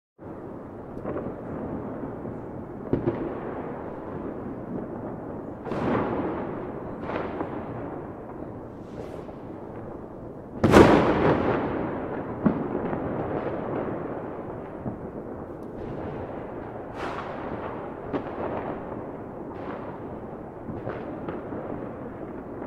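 Fireworks and firecrackers going off: a continuous crackle under irregular bangs every second or two. The loudest bang comes about halfway through and is followed by a long rolling echo.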